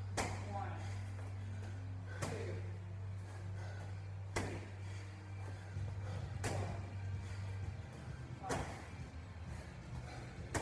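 Wall-ball shots: a 20-pound medicine ball thrown against a wall, a sharp smack about every two seconds, five in all.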